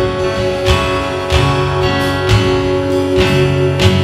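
Live band playing an instrumental passage: an acoustic guitar strummed over held keyboard chords, with bass and a regular drum beat underneath.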